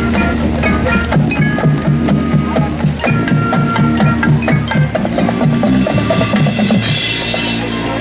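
Marching band playing a Motown-style groove: a bouncing, repeating bass line with short struck mallet-keyboard notes ringing above it. A brief burst of hiss comes about seven seconds in.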